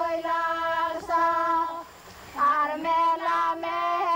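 Women's voices singing a Palauan song in long held notes, breaking off briefly about two seconds in before resuming.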